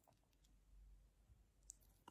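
Near silence, with a few very faint clicks.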